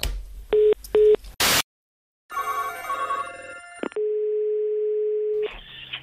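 Telephone line tones between two calls: two short beeps of a busy tone as the line hangs up, a brief burst of noise, then a short electronic sound and a steady dial tone lasting about a second and a half.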